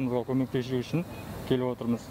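Only speech: a man talking, with a short pause in the middle.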